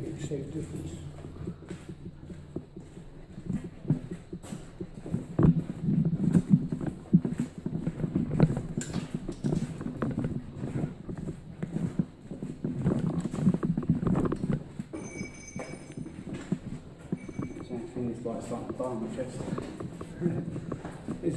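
Footsteps walking along the hard floor of a corrugated-steel-lined tunnel, an irregular run of short knocks. Two brief high-pitched tones sound about three-quarters of the way through, and indistinct voices come in near the end.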